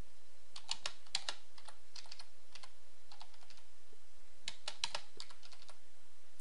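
Typing on a computer keyboard: light, faint keystrokes in short irregular runs, over a faint steady hum.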